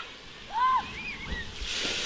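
A child's short high shout about half a second in, then splashing water spray building up near the end.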